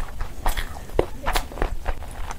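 Close-up eating sounds: wet chewing and lip smacking of rice and curry eaten by hand, a run of sharp, irregular clicks several times a second.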